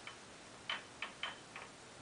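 A few faint, light clicks at uneven intervals, one or two with a brief high ring.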